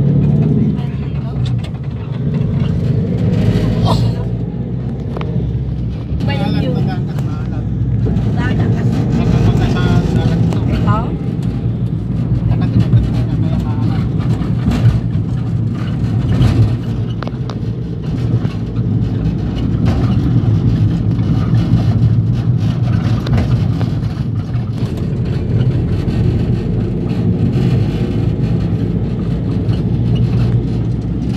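Engine and road noise of a vehicle heard from on board while it drives along at a steady speed.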